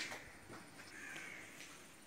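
A faint bird call about a second in; otherwise quiet.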